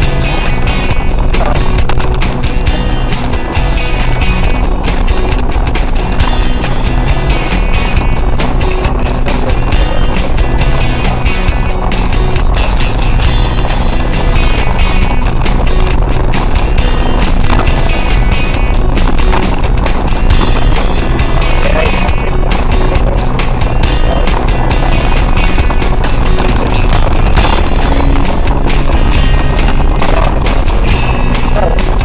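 4x4 driving steadily along a rough desert dirt track, heard from inside the cab: engine running with tyre and body rattle, and music playing over it.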